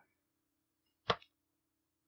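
A single short, sharp click about a second in, otherwise near silence.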